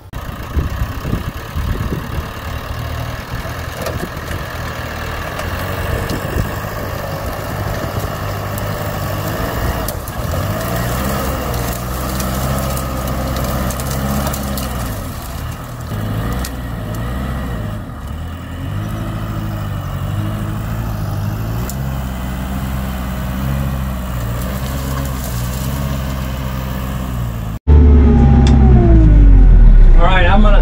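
Kioti RX7320 tractor's diesel engine running under load as the tractor pushes a large brush pile with its front loader, the engine note rising and falling as the throttle and load change. Near the end the engine turns much louder, heard from inside the cab.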